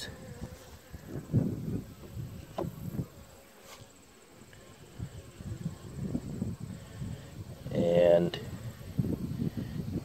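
Honey bees buzzing around an open mini mating nuc. Single bees pass close to the microphone with a buzz that rises and falls in pitch, and a louder, steady hum comes about eight seconds in.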